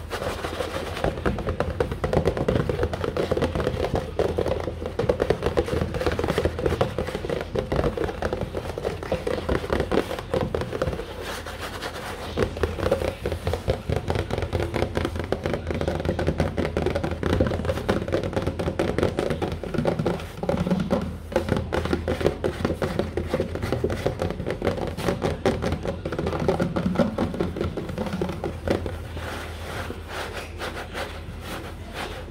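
Fingertips and fingernails tapping and scratching quickly on a cardboard cereal box, a dense, unbroken run of light taps.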